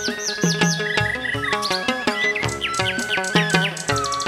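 Songbird chirps, a run of short falling whistled notes repeated throughout, laid over chầu văn ritual music of drums and moon lute playing a steady beat.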